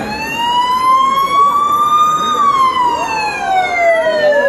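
Show soundtrack: one long wailing tone with rich overtones, rising in pitch for about two seconds, then gliding slowly down. Fainter wavering whistles sound behind it.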